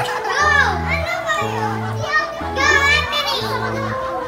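Young girls giggling and squealing in high-pitched bursts, once about half a second in and again for about a second near the three-second mark, over a background song with a steady repeating bass line.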